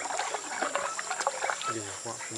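Water trickling and lapping in quick, irregular little splashes around a small boat on a lake, under low voices.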